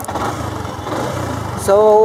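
Yamaha Sniper 150's liquid-cooled 150cc single-cylinder four-stroke engine idling with a steady low pulse. A rustling noise lies over it for the first second and a half.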